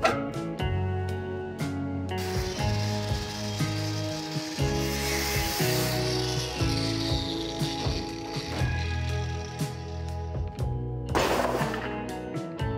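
Background music with a bass line, over which an angle grinder cuts through steel sheet from about two seconds in to about eight seconds, a steady hissing grind, cutting an opening in a truck's hood for a hood scoop. A second short burst of noise comes near the end.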